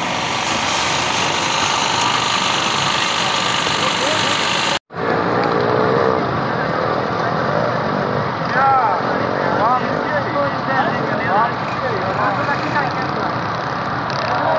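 Many spectators talking and calling out over steady engine noise from off-road rally jeeps. The sound drops out for an instant about five seconds in.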